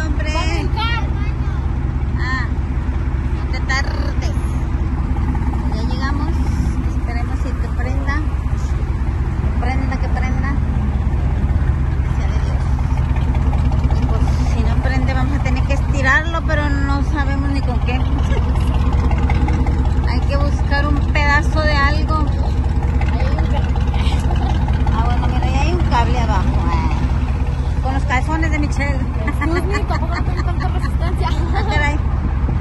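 A vehicle engine running steadily at idle, a continuous low drone, with people's voices talking over it on and off.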